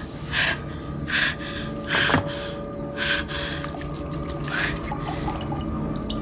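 A woman's sharp, ragged gasps of pain, five breaths at uneven intervals, over a low steady drone.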